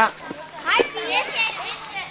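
Several children talking and calling out over one another, with a short knock among the voices.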